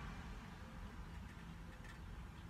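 Quiet pause filled by a faint, steady low rumble of background noise.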